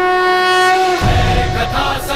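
A conch shell blown in one long, steady note that stops about a second in. Deep rumbling music then comes in.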